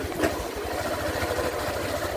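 A small engine or motor running steadily, with a rapid, even low throb and a faint steady higher tone over it.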